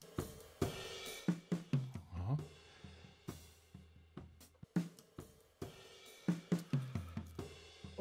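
Recorded drum kit played back through its stereo overhead microphone pair: cymbals and hi-hat over snare, kick and tom hits in an irregular pattern, fairly quiet.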